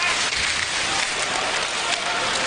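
Ice hockey arena ambience: steady crowd noise and skates on the ice.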